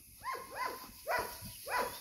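A dog whining in four short, quiet whines, each rising and then falling in pitch, about half a second apart.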